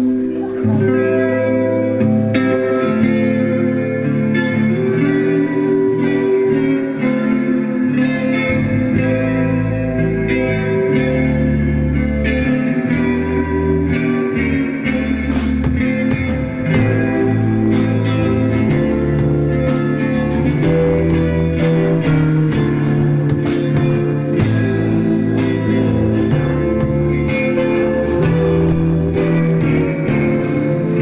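A live rock band playing an instrumental song intro: clean electric guitar chords, a deep bass line coming in about nine seconds in, and drums and cymbals filling in steadily from about twelve seconds on.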